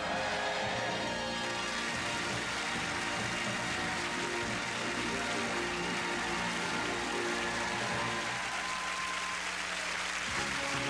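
A theatre orchestra playing sustained closing music under steady applause and clapping.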